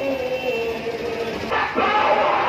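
A single voice holds a wavering chanted note. About one and a half seconds in, a louder crowd of many voices takes over.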